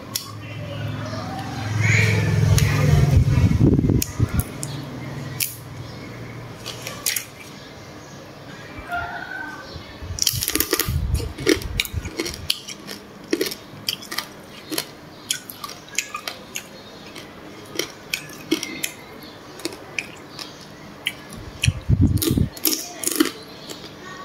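Close-miked crab eating: crab shell cracked and pulled apart by hand and chewed, giving many short sharp crackles and clicks, with a few heavy low thuds near the start and again near the end.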